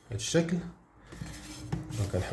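A clear plastic ruler being picked up and moved onto a sheet of paper on a desk: a brief clatter and rubbing of plastic.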